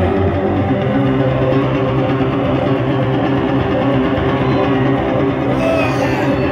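Electric bass guitar played solo through an amplifier, a continuous run of quickly changing notes at a loud, steady level.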